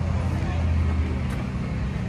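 Indistinct background voices over a steady low rumble.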